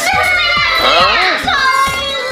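Excited talking over background music with a steady beat.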